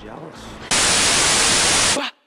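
A loud, even burst of static-like white noise that starts suddenly under a second in and cuts off abruptly about a second later, after a short quiet stretch.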